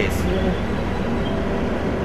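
Steady street traffic noise: the running of passing and idling vehicles in congested road traffic.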